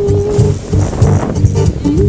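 Live acoustic duet music: an acoustic guitar strummed in a steady, even rhythm under a wordless vocal melody from the singer, one held note and then short notes.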